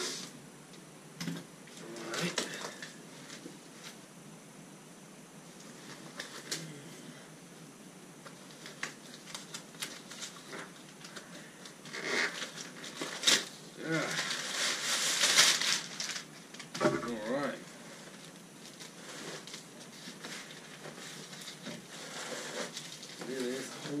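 Packing tape being slit and peeled off a long cardboard shipping box, with scattered scrapes, crinkles and clicks of cardboard and tape; the loudest stretch of tearing comes about halfway through.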